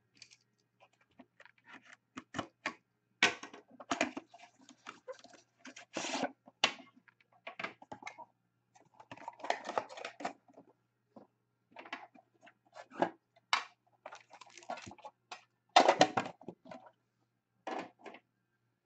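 Upper Deck Premier hockey card boxes and cards being handled and opened by hand: irregular taps, rustles and scrapes of cardboard and card stock, with a few louder bursts spread through.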